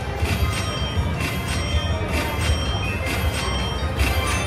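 Slot machine bonus-feature music and sound effects: a jingle with a steady beat of short hits and held tones, sounding as a 2x multiplier coin doubles the values of the collected coins.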